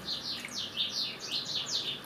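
A small bird chirping: a rapid run of short, high, falling chirps, about five a second.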